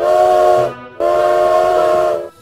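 Steam locomotive whistle blowing two long blasts, the second longer. Each blast is a chord of several steady tones over a hiss.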